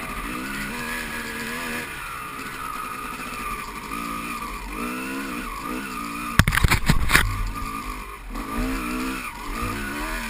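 Dirt bike engine running close to the microphone, its pitch rising and falling again and again with the throttle. About six and a half seconds in comes a burst of hard knocks and rattles lasting under a second, the loudest moment.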